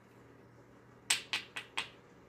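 Four quick, sharp clicks about a quarter second apart from two glass perfume bottles with metal caps being handled and brought together, after a moment of quiet room tone.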